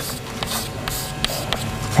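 Chalk on a chalkboard: a handful of short taps and scrapes as a dashed line is drawn with separate strokes.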